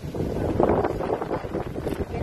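Wind buffeting the microphone: a loud, rough rumble that comes up suddenly at the start and holds, gusting unevenly.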